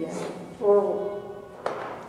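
A short spoken line over soft background music, with a brief sharp click near the end.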